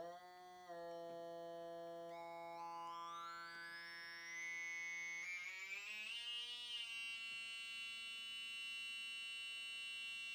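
Hard-synced oscillator of a modular synthesizer (Rob Hordijk's Sync OSC module) holding a steady low pitch while the synced frequency is swept upward, a bright peak climbing through the harmonics over a few seconds and then holding steady. Its flank-suppression circuit removes the sync-edge artefact, leaving a clean, pure flanging-like sync sweep.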